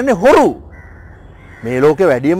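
A man speaking loudly and emphatically into the microphones, breaking off for about a second in the middle before going on.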